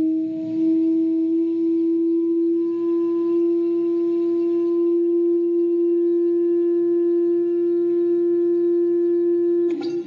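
Steady, loud single-pitched hum of a Chladni plate set vibrating by a tone generator, its pitch creeping slightly upward as the sand on it gathers into a star-and-ring pattern.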